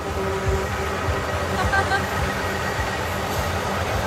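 Semi-truck air horns sounding in held, steady tones over the noise of a crowded street.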